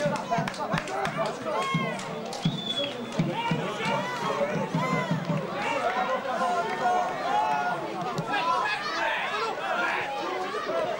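Several voices talking and calling out over one another: football spectators close by, with no single voice standing out.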